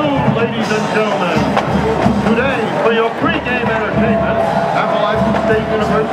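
Mostly speech: a stadium public-address announcer's voice.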